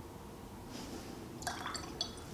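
Paintbrush dipped and swished in a small jar of rinse water: faint watery splashing, then a few light clinks of the brush against the glass in the last half second.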